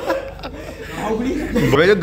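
A group of friends chuckling and laughing, dropping to quieter murmuring voices in the middle, with a voice rising into laughter near the end.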